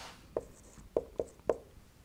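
Marker pen writing on a whiteboard: four short strokes as a brief expression is written.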